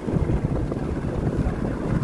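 A small boat running on the water, with wind buffeting the microphone in a steady low rumble.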